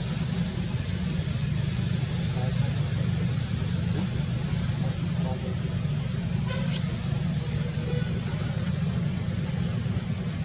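A steady low rumble with faint voices.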